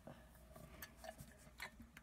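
Near silence with a few faint ticks from a small plastic glitter tube being shaken and tapped over slime.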